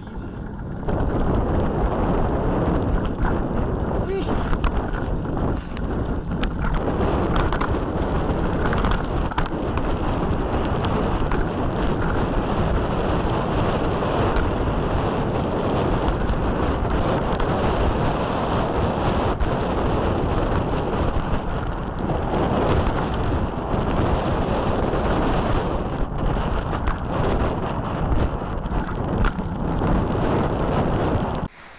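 Wind rushing and buffeting loudly on an action camera's microphone as a mountain bike rides downhill in rain, a steady roar of noise that starts about a second in and holds throughout.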